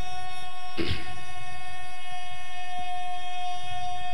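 A steady pitched tone holding one pitch without change, with a strong overtone and many fainter ones above it, and a single short knock about a second in.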